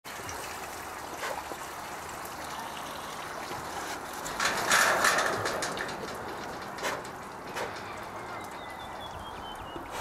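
Water sloshing and trickling in a tub as a brown bear stands and shifts in it, with a few small knocks and a louder splash about five seconds in.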